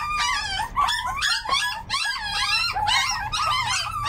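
Several young, still-nursing puppies whining and crying at once, a steady run of overlapping high-pitched cries rising and falling: hungry pups waiting to be fed.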